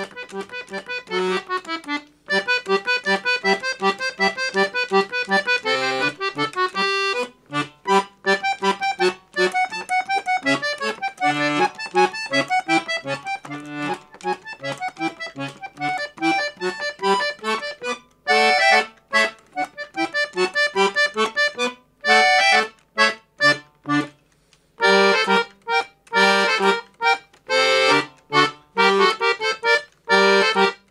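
Paolo Soprani piano accordion played solo: a sonata in quick, detached notes, with a few short breaks between phrases.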